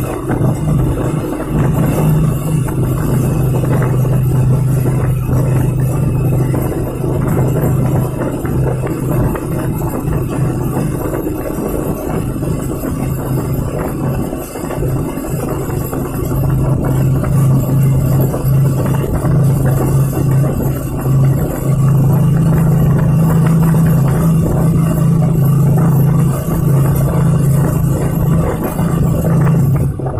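Vehicle driving through a road tunnel: a loud, steady roar of engine and road noise inside the tunnel, with a low drone that weakens briefly around the middle and comes back.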